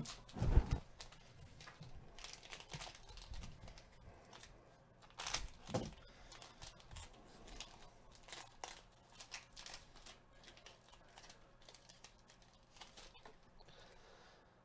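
A thick trading-card pack's plastic wrapper being torn open and crinkled by gloved hands, in scattered crackles with a denser burst about five seconds in. A low thump about half a second in is the loudest sound.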